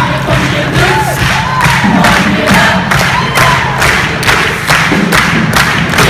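Show choir dance number: loud backing music with a strong, steady beat, about three to four hits a second, with group voices singing and shouting over it.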